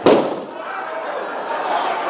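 A single sharp pop at the very start, echoing and dying away in a large hall, from a balloon bursting.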